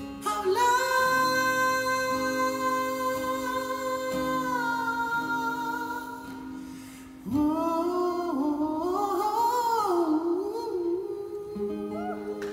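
Live male vocals with an acoustic guitar: one long held sung note, then about seven seconds in a new phrase that slides and wavers in pitch, over sustained guitar chords.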